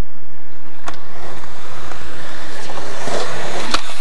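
Skateboard wheels rolling over concrete, the rolling noise growing louder, then a sharp pop of a skateboard tail near the end as the skater ollies up onto a handrail.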